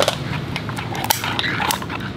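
Irregular light clicks and clinks as the shell of a cooked king crab is handled and pried apart beside a ceramic sauce bowl with a metal spoon in it.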